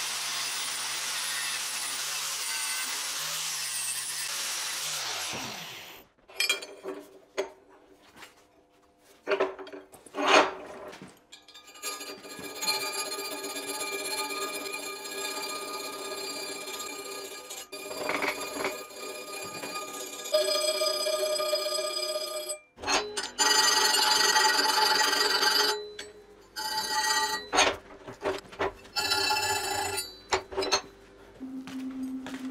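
Angle grinder grinding a steel cut-out, a steady rasp that stops and spins down about five seconds in. After that come scattered metallic clicks and clinks with long ringing tones.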